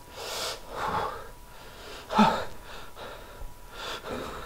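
A man breathing hard in sharp gasps, four breaths, the loudest about two seconds in with a short voiced catch: the breathing of someone dizzy and distressed.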